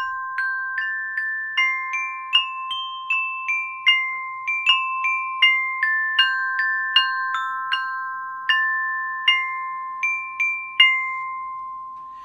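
Metal-bar glockenspiel struck with mallets, playing a simple tune of single notes at about two a second. Each bright note rings on after it is struck, and the last one is left ringing near the end.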